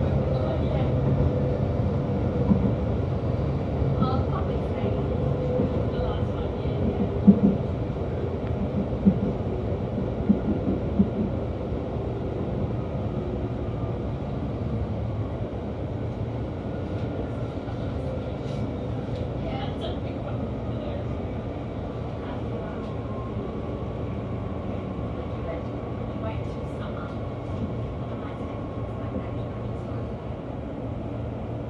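Electric suburban train heard from inside the carriage, a steady low rumble that gradually eases as the train slows into a station. A few sharp clicks come in the first third, and a thin whine, falling slightly in pitch, runs through the last third as it brakes.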